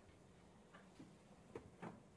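Near silence: quiet room tone with a few faint, short clicks or taps, the clearest near the end.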